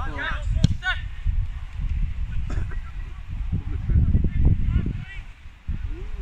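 Wind buffeting a phone microphone at a football match, with short high shouts from players in the first second and again faintly later, and one sharp knock, such as a ball being kicked, about two-thirds of a second in.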